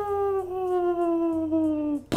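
A man's voice imitating a cartoon sound effect: one long, high note sliding slowly down in pitch and then cutting off. It is the Wile E. Coyote-style effect for a character flying away and shrinking to a speck.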